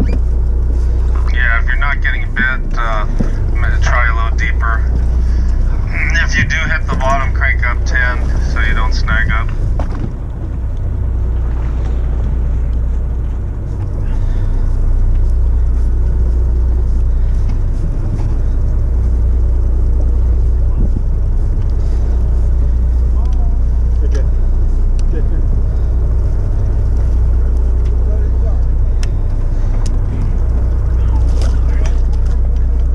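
Steady low rumble of the sportfishing boat's engine running. Indistinct voices sound over it during the first third.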